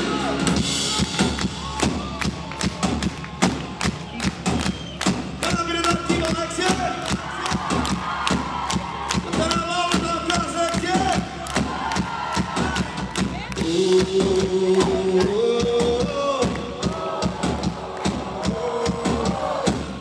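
Live rock band playing with a steady drum beat while the audience sings along.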